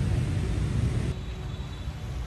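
Steady low outdoor rumble with no clear single source, dropping in level about a second in.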